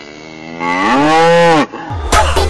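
A cow mooing: one long moo that swells up, its pitch rising and then falling away.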